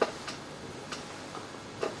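Four light clicks and taps from objects being handled on a table, the first the sharpest and loudest.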